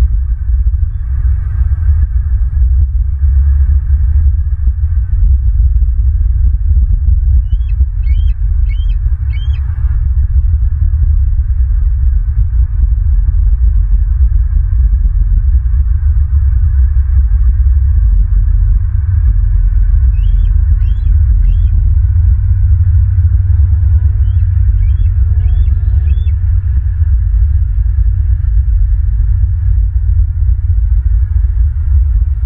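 Steady low rumble of wind buffeting an outdoor microphone. Over it, a bird gives three short runs of three or four high chirps: at about eight seconds, about twenty seconds, and about twenty-five seconds in.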